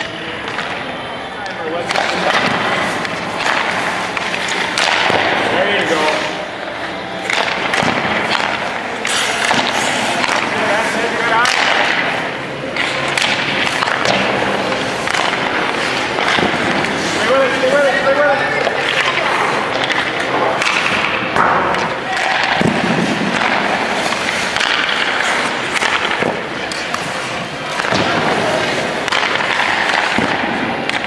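Ice hockey shooting drill: skate blades scraping and stopping on the ice, and repeated sharp knocks of pucks off sticks, goalie pads and the boards, with indistinct voices in between.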